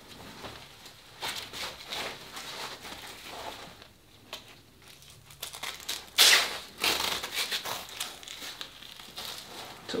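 Nylon strap of a knockoff CAT-style tourniquet being handled and wrapped around a thigh: irregular rustling and scraping of webbing, with two louder rasps about six and seven seconds in.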